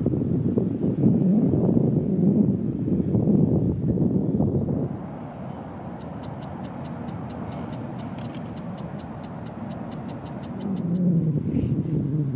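Low rumbling outdoor background noise, loud for the first few seconds, then dropping to a quieter hush. During the quiet part comes an even series of faint high ticks, about four a second, and the low rumble swells again near the end.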